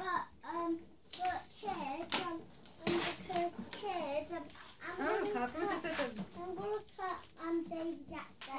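A child's voice talking, with a few sharp handling noises from the cardboard toy box.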